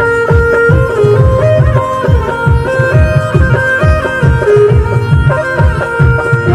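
Traditional folk music from the Uttarakhand hills: a melody of held notes that step up and down, over a steady, driving drum beat.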